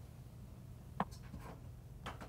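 A finger tapping a smartphone touchscreen: one sharp click about a second in and a fainter one just after, over a steady low hum.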